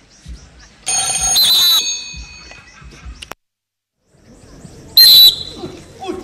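Two loud, shrill whistle blasts, most likely the referee's whistle at the end of a timed bout: one about a second long starting about a second in, and a shorter, louder one near the end. A short dead silence falls between them where the broadcast cuts. Soft low thumps recur about once a second during the first half.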